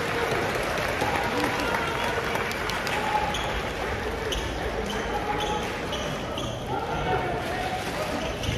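Basketball game heard from the stands: the ball bouncing on the hardwood court, with several short high squeaks in the middle, over steady crowd chatter in the hall.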